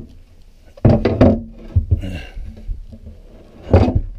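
Wooden cabin-floor hatch being set down and settled into its frame: a cluster of knocks and thumps about a second in, smaller knocks after, and one louder thump near the end.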